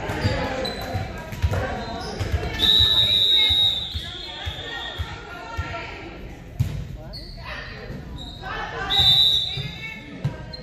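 Referee's whistle blown twice: a long blast about three seconds in and a shorter one near the end. Between them are voices and balls thumping on the hardwood gym floor.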